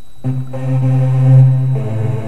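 Nexus software synthesizer's 'LD Trance Saws Wide' lead, played from a MIDI keyboard. One low note is held for about a second and a half and swells louder, then the synth moves to another note near the end.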